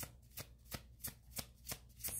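A deck of tarot cards being shuffled hand to hand, each pass a short crisp card slap, about three a second.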